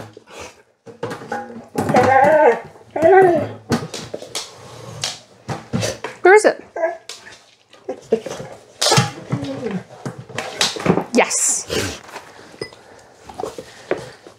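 A woman's short, high-pitched spoken cues and praise to a dog, with scattered brief knocks and clatters as the dog works the lid of a metal mailbox.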